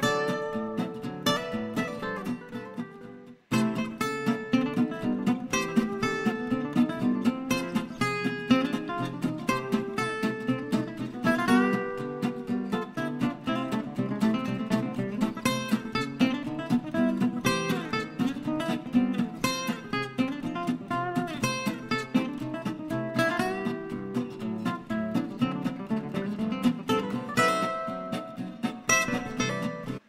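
Acoustic guitar music with quick plucked and strummed notes; it breaks off briefly about three and a half seconds in, then carries on.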